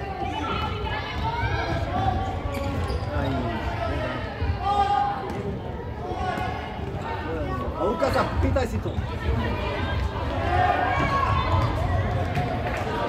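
Futsal ball being kicked and bouncing on a wooden sports-hall floor, a few sharp thuds echoing in the large hall, amid a continual background of shouting and chattering voices.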